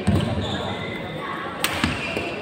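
Badminton play in a large sports hall: a low thud just after the start, then two sharp racket-on-shuttlecock hits close together near the end.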